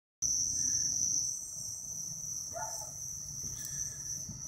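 A steady, high-pitched chorus of crickets chirring without a break.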